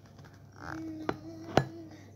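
Two sharp knocks about half a second apart, the second louder, over a faint steady hum.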